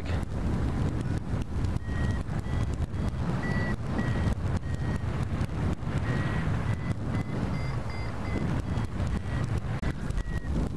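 Airflow rushing and buffeting over a hang glider's wing-mounted camera microphone, with the faint, broken high beeping of a flight variometer, the tone it gives while the glider climbs in lift.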